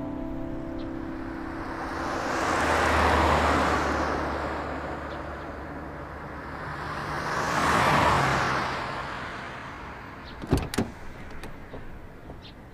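A Rolls-Royce Phantom driving by twice, each pass a slow rising and falling whoosh of tyres over a low engine hum, then two sharp clicks of a car door latch near the end.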